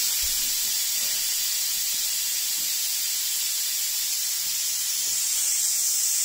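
Air hissing steadily out of an inflatable stand-up paddle board's valve while a hand works the valve.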